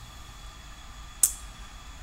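Steady low room hum during a pause, broken a little over a second in by a single short, sharp click.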